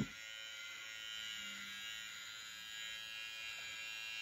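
Electric hair clippers buzzing steadily and faintly while shaving a man's head.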